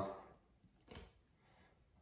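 Near silence with room tone and one faint click about a second in, from handling at the force-gauge test stand's line grip.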